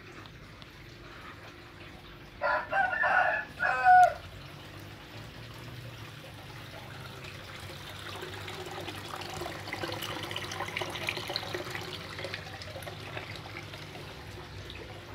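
A rooster crows once, a little over two seconds in, its call ending on a falling note. After it, a steady rushing of water that grows slightly louder in the second half.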